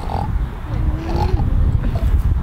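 Low rumbling noise on the microphone, with a faint voice heard briefly in the background.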